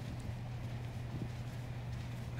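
A steady low hum under faint, even outdoor background noise, with no distinct event.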